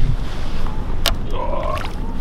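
Steady low rumble of a boat trolling, with one sharp splash about a second in as a walleye is dropped back over the side into the water. A brief short vocal sound follows.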